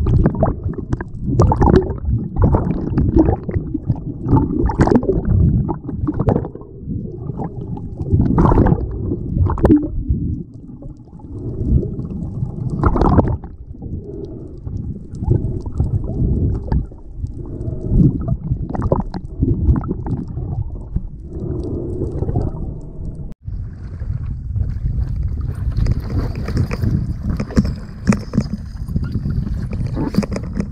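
Muffled underwater sound from a camera held below the surface: irregular low rumbling and gurgling of moving water. After a short break near the end, the sound turns to surface water sloshing and splashing around the camera, with more hiss.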